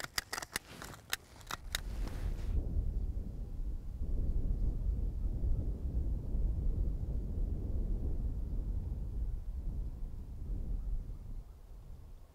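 A hand stapler clicking about six times in quick succession as a paper bud cap is stapled onto a young pine's top shoot to shield it from deer browsing. Then a steady low rumble for the rest.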